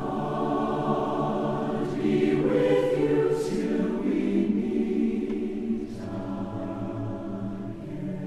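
Choir singing held chords that change about two seconds in and again near six seconds.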